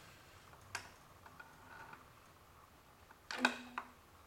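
Distributor being lowered by hand into a V8 engine block: a light click and a few faint ticks, then a louder short clunk about three seconds in as the distributor drops into place on its drive gear.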